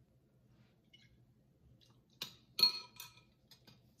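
Kitchenware clinking: two sharp clinks with a brief ring about two seconds in, the second the loudest, followed by a few light ticks.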